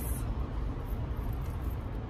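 Steady low rumble inside a parked vehicle's cabin, typical of the engine idling, with a brief rustle of cloth right at the start as a headwrap is pulled off.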